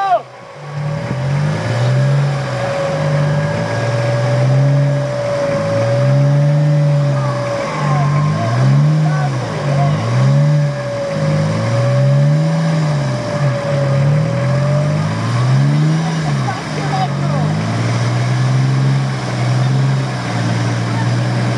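Off-road 4x4 engine revved up and down over and over, about once a second, as a vehicle stuck in deep mud is worked free. A steady whine runs above it and stops about three-quarters of the way through.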